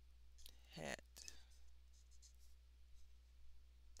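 Near silence: faint scratching of a marker stroking over paper, with a brief murmured voice sound just under a second in, over a steady low hum.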